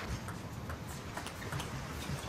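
Table tennis ball being hit and bouncing on the table during a rally: a series of light, sharp clicks over a low arena background hum.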